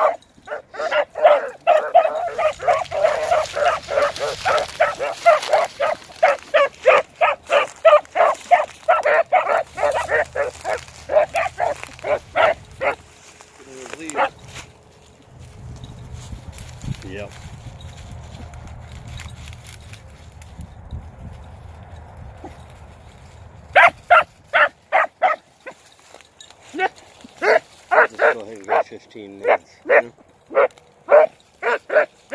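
Beagle hounds baying on a scent trail: rapid repeated barks, about three a second, for the first dozen seconds. A quieter stretch with a low rumbling noise follows, and the baying starts again near the end.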